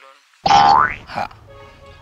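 Comic cartoon-style sound effect: a loud springy boing about half a second in, its pitch sliding steeply upward over about half a second, then fading away.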